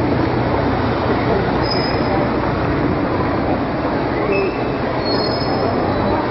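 Loud, steady city street noise, with brief faint high squeals about two seconds in and again near the end.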